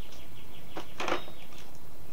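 Steady background noise with a few faint bird chirps, and a short clack about a second in, with a lighter one just before it, as something is handled.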